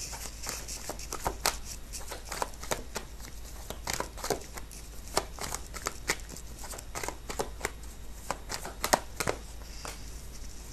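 A deck of tarot cards being shuffled and handled: irregular soft clicks and flicks, a few a second, fairly quiet.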